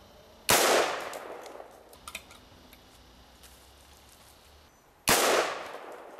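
Two rifle shots from a Kel-Tec SU-16C in 5.56, about four and a half seconds apart, each sharp crack followed by an echo dying away over about a second.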